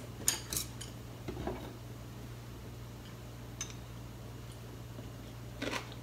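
Chopsticks clicking lightly against a white plate as food is picked up: a few short clicks soon after the start, a softer one a little later, and a couple near the end, over a steady low hum.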